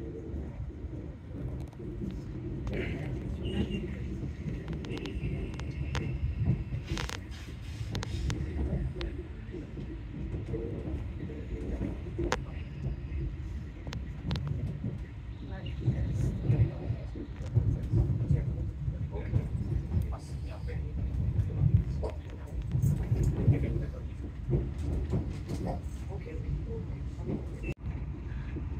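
Inside an SNCF Intercités passenger carriage as the train gets under way: a low, uneven rumble of the car running on the rails, broken by sharp clicks and knocks from the wheels on the track.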